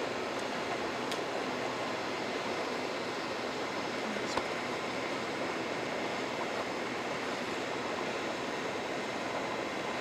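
A steady, even rushing noise with no change in level, and a single sharp click about four seconds in.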